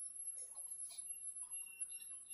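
Quiet room tone: a faint steady high-pitched whine with a few soft, brief scattered sounds.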